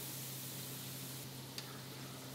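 Faint, steady hiss of hot frying oil in a wok as fried potato straws are lifted out on a wire spider, over a low steady hum, with one small click about one and a half seconds in.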